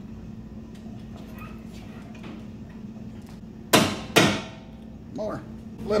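Two sharp metallic knocks about half a second apart, each ringing briefly: the steel bolt being worked into the Jeep JK front track bar's axle bracket while the holes are brought into line.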